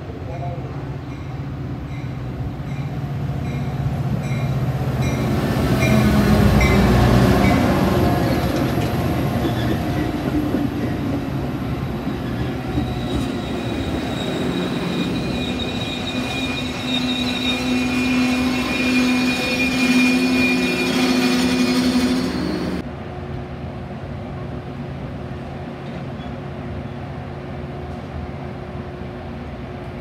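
Metra diesel-hauled commuter train arriving at a station: the locomotive passes, loudest about six to eight seconds in, with faint regular ringing ticks over it early on, typical of its bell. The bi-level coaches then roll by with steady high brake squeal that cuts off suddenly a little over twenty seconds in as the train comes to a stop, leaving a steady low hum.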